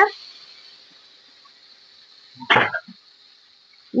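Oil sizzling faintly on a hot comal, a steady high hiss, with one short vocal sound about two and a half seconds in.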